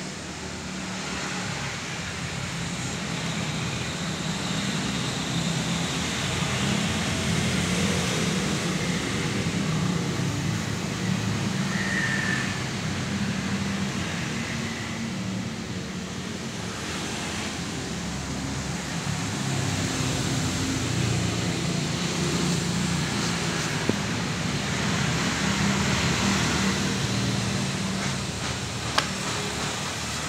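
Steady low vehicle rumble that slowly swells and eases, with two short sharp ticks near the end.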